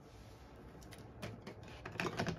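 A few faint, short clicks and taps of small craft items being handled on a table, over quiet room tone.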